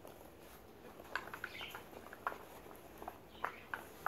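Paper gift bag rustling and crinkling as a hand rummages inside it, with a scatter of light clicks and taps.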